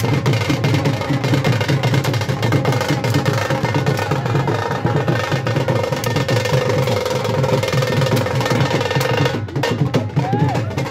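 Rapid, continuous drumming with sharp wooden clacks from gatka sticks striking each other. A steady held tone sounds over it through the second half, and the sound briefly drops out near the end.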